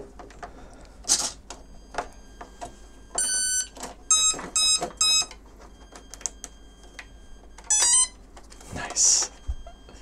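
Electronic beeps from an electric RC plane's speed controller sounding through the motor as the battery is connected: one long beep, then three short beeps, then a quick rising run of tones as it arms. Handling clicks and rustles around it.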